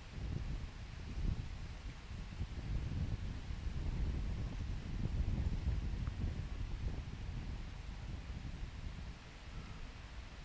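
Wind buffeting the microphone: an uneven low rumble that swells after the start, is strongest in the middle and eases near the end.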